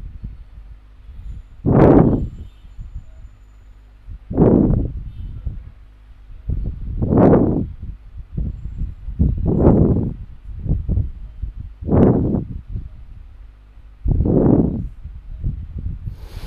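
A person breathing close to the microphone, six breaths about two and a half seconds apart, over a faint steady hum.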